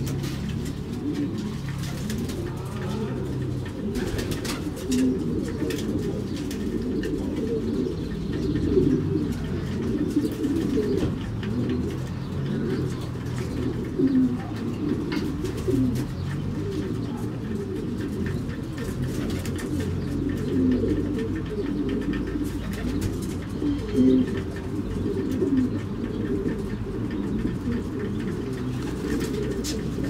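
Racing pigeons cooing in their loft, many low overlapping coos running on without pause, with a few sharp knocks now and then.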